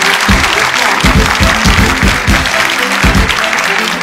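An audience applauding over background music with a steady beat.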